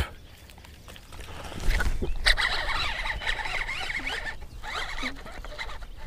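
A sharp knock right at the start, then from about two seconds in a baitcasting reel cranked hard with a fast whirring rattle that fades toward the end, as a hooked bass is reeled in on heavy braided line.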